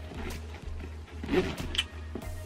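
Soft background music under handling noises of a leather handbag as a wallet is slipped inside it. There are a few short rustles and a small click near the end.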